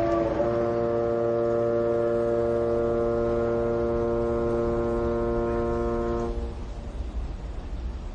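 A ship's horn sounding one long steady blast of about six seconds, starting just under half a second in.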